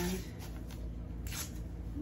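Green painter's tape being pulled off its roll and torn, with one short rasp a little over halfway through.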